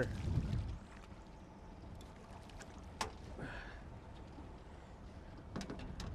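A hooked smallmouth bass splashing and thrashing at the surface beside the boat in the first second, then low water noise with a sharp click about three seconds in and a few light clicks near the end.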